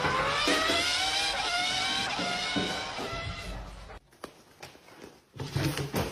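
A cat's long, drawn-out yowl that dips in pitch, then rises and wavers before fading out about four seconds in. A few light knocks follow near the end.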